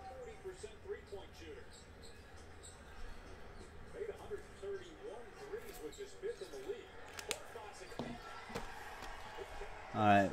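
A faint voice in the background over a low hum, with a few light clicks and knocks from sealed card boxes being handled, the sharpest about seven seconds in.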